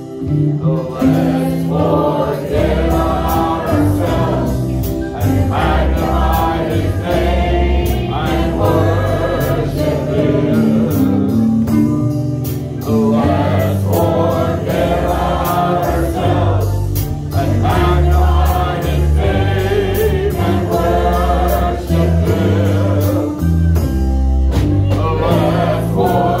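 A gospel worship song sung by a group of voices with a live band, over a steady beat.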